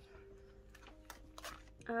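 A plastic sleeve page of a ring binder being turned: a few short crinkles and clicks of the clear pockets about a second in.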